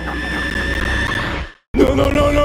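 Cartoon character vocal sounds: a sustained sound cuts off abruptly about one and a half seconds in, and after a short silence a new held, steady-pitched voice starts near the end.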